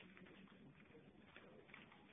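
Near silence: room tone, with only faint low sounds.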